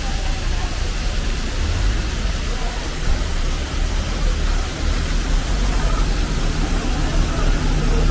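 Steady rushing noise of a waterfall, with a low rumble underneath and faint voices of people in the background.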